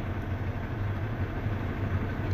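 Steady low mechanical hum with no distinct events.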